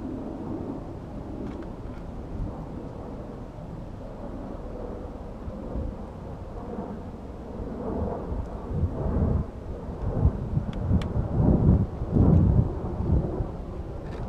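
Wind buffeting the microphone: a low, uneven rumble that gusts noticeably louder for several seconds in the second half, with a few faint clicks.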